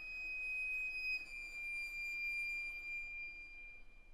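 Solo viola holding a single very high sustained bowed note, which dips slightly in pitch about a second in and fades away near the end.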